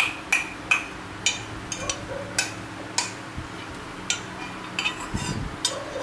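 Thin metal rod tapping a stainless steel sauce bowl: about a dozen light taps at uneven intervals, each with a short, bright metallic ring.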